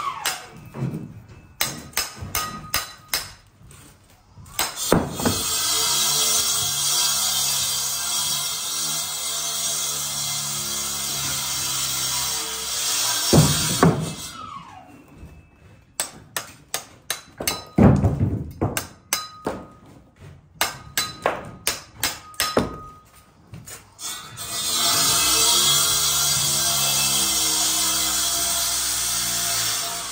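Brick trowel chopping and trimming a hand-held brick: two runs of quick sharp taps, about three a second, over background music.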